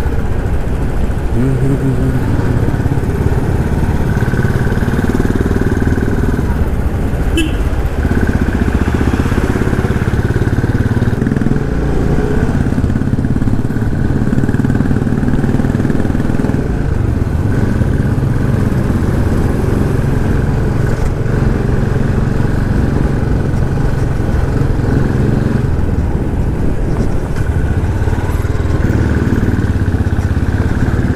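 Motorcycle engine running while being ridden, heard from the rider's seat, its pitch rising and falling slightly with the throttle. There is one brief click about seven seconds in.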